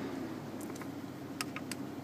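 2005 Dodge Magnum idling, a steady low hum heard inside the cabin, with a few faint light clicks of handling around the shifter.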